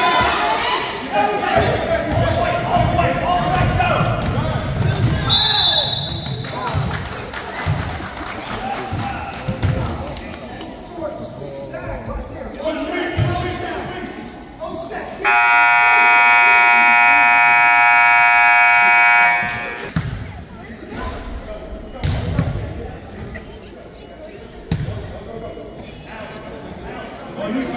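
Gym scoreboard buzzer sounding one long steady blast of about four seconds, signalling the clock running out at the end of the third period. Around it are spectators' chatter, basketball bounces on the hardwood, and a short high whistle about five seconds in.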